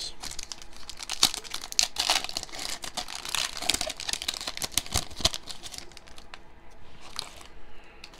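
Foil wrapper of a Panini Mosaic NBA trading-card pack being torn open and crinkled by hand. The crackling is dense for about six seconds, then thins out, with one last short crinkle near the end.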